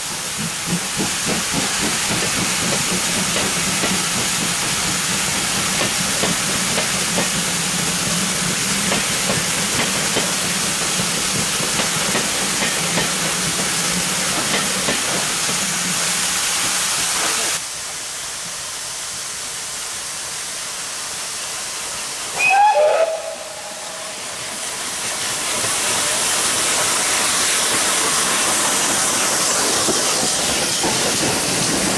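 A steam-hauled train of coaches passing, wheels clattering over the rail joints over a low steady hum. Then, after a quieter stretch, a short whistle blast falling in pitch is the loudest sound, followed by a steam locomotive's hiss swelling as it passes close by.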